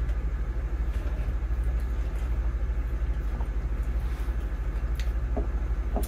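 Steady low background rumble, with one or two faint ticks near the end.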